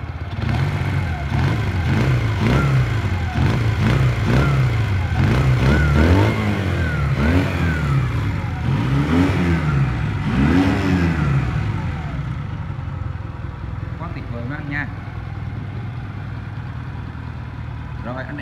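Honda CM125 Custom's air-cooled parallel-twin engine, with a warm exhaust note, revved up and down about once a second for roughly twelve seconds, then settling back to a steady idle.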